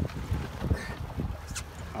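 Wind rumbling on the microphone aboard an open boat at sea, a steady low buffeting, with a faint tick about one and a half seconds in.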